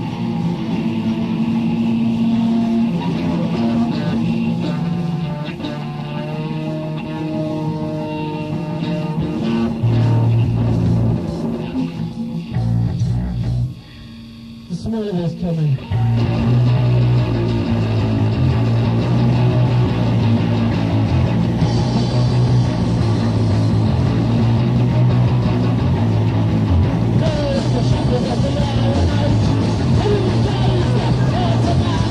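Live rock band playing a song with guitar. Partway through, the music drops away briefly with a falling slide in pitch, then the full band comes back in over a steady bass line.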